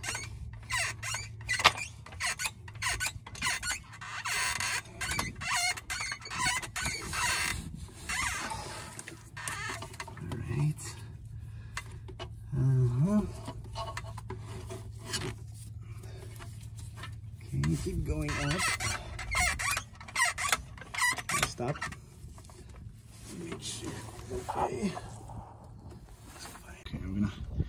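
Floor jacks being worked under a car to raise a transmission into place: many irregular clicks and light metal knocks, with a few short squeaks, over a steady low hum.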